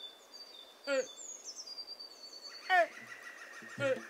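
A bird calling: three short calls, each falling in pitch, about a second in, near three seconds and near the end, with faint thin high whistles between them.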